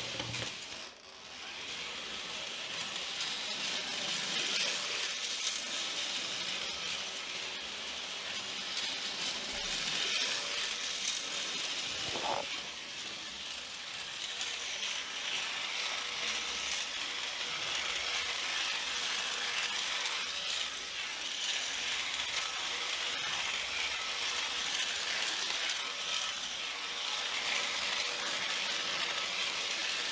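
Small clicks and rattles of model locomotive parts being handled, over a steady hiss. A short pitched sound comes about 12 seconds in.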